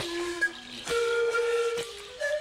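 Indigenous panpipes playing long, breathy held notes: a lower note, then a higher one held for about a second. A few sharp clicks fall among the notes, the loudest about half a second in.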